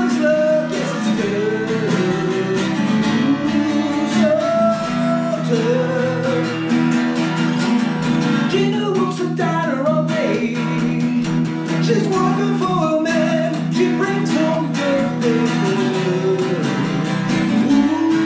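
Twelve-string acoustic guitar strummed in a steady rhythm, with a man singing along.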